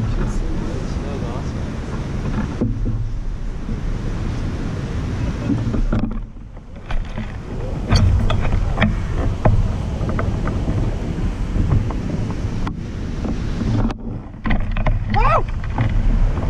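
Wind buffeting the microphone of a camera mounted on a hang glider's frame: a steady low rumble and hiss that dips briefly about six seconds in. From about eight seconds in, short knocks and rattles come from the glider frame as it is moved across the grass.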